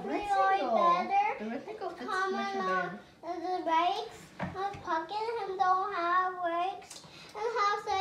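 Children's voices talking, the words not made out.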